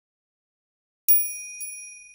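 A bright, high bell chime sound effect, struck about a second in with a lighter second tap half a second later, ringing on and slowly fading; it marks the break between two stories.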